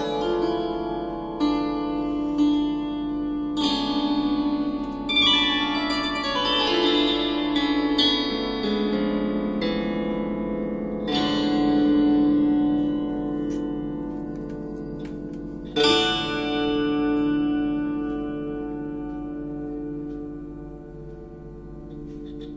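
Swarmandal strummed in sweeping strokes, its many metal strings ringing on after each stroke. The strings are struck afresh several times, and a falling run of single notes is plucked one after another from about six to ten seconds in.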